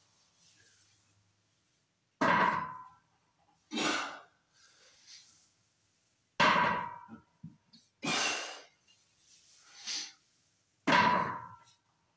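Deadlift reps with a plate-loaded barbell: the plates knock down on the floor three times, about four seconds apart, each with a brief metallic ring. Between the knocks come the lifter's hard exhales.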